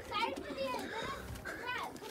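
Faint children's voices and chatter in the background, with no nearby speech.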